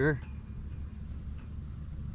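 Steady high-pitched chorus of insects, crickets, over a low steady rumble.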